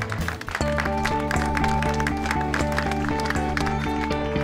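Background music. It dips briefly about half a second in, then goes on with a new passage of held notes.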